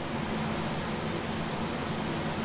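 Steady background hiss of studio room noise with a faint low hum underneath.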